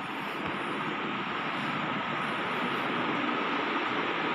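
Steady, even hiss-like background noise with a faint high steady tone in it, slowly growing louder.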